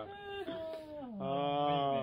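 A person's drawn-out wordless vocal sound: a held tone that slides down in pitch, then a longer, lower held tone through the second half.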